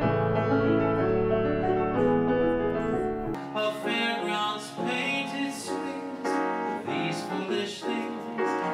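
Grand piano played live, at first sustained chords over a deep bass, then, about three seconds in, an abrupt change: the deep bass drops away and brighter, separately struck notes follow.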